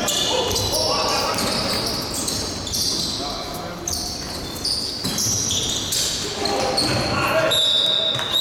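Basketball game sounds on an indoor court: the ball being dribbled, sneakers squeaking in short high chirps, and players calling out. A referee's whistle blows near the end, one long steady note.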